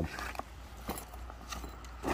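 Faint handling noise: a short rustle at the start and a few soft knocks as a nylon duffel bag is moved and set down, over a steady low rumble.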